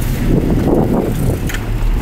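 Car running along an unpaved dirt road, heard from inside the cabin: a steady low rumble of engine and tyres. A short click comes about one and a half seconds in.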